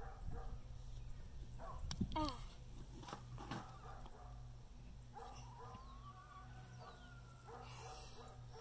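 Chickens clucking faintly, with the rustle of potato stalks and soil as a girl digs by hand.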